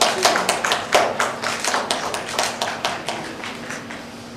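A small audience applauding, the separate claps clearly heard, thinning out and dying away near the end.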